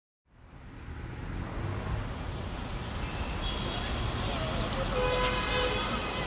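City traffic ambience fading in: a low, steady rumble of road traffic growing louder, with a few faint horn toots in the second half.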